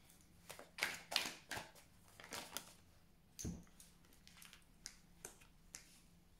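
Oracle cards being handled and laid down on a table: a series of faint short rustles and taps, with a few lighter clicks in the last couple of seconds.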